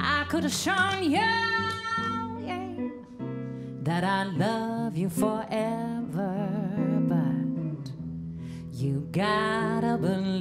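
A woman singing a slow song into a microphone with guitar accompaniment, her held notes wavering with vibrato. Her sung phrases come in three lines: at the start, about four seconds in, and about nine seconds in, with the guitar carrying on between them.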